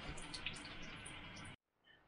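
Water running steadily from a Tyent ACE-11 water ionizer's spout into a sink as it flushes on alkaline level one, with a few faint drips; the sound stops abruptly about one and a half seconds in.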